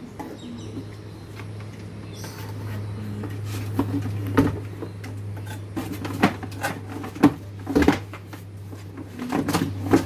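Handling noise as a plastic pressure-washer body is lifted and pulled about in its cardboard box: a handful of sharp knocks and rustles, several of them in the second half, over a low steady hum.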